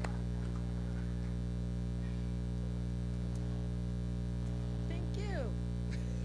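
Steady electrical mains hum, a low buzz made of several constant tones, with a faint voice briefly near the end.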